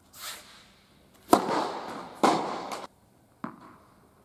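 Tennis ball struck hard with a racket, two sharp cracks a little under a second apart, each ringing out in the echo of an indoor tennis hall, followed by a softer knock near the end.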